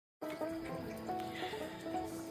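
Quiet acoustic string instruments of a bluegrass jam sounding soft held notes, with the pitches shifting about a second in.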